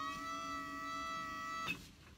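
Motor of a truck-mounted hive loader whining steadily as the boom lifts and swings a pallet of hives, then cutting off suddenly near the end.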